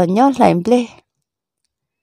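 A voice speaking for about the first second, then cutting off into dead silence.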